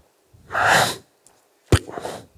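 A man's short breathy hiss from the mouth, about half a second long, then a sharp click near the end.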